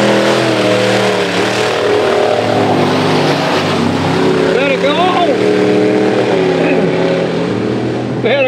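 Mud-racing pickup truck engines running hard at high revs, their note holding steady with a few small shifts in pitch. A voice calls out briefly about halfway through.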